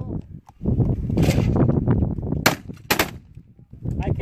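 Shotgun firing at a trap target: a sharp report about halfway through, then another crack under half a second later. Wind rumbles on the microphone throughout.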